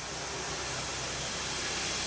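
Steady airy hiss with a faint low hum underneath, growing slightly louder.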